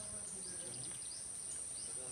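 A steady high-pitched insect chorus, like crickets trilling, with a few faint bird chirps over it.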